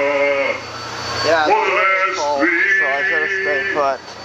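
Leadsmen singing out depth soundings in a drawn-out chant: a man's voice holding long notes, with a gliding call in the middle and a long held note near the end.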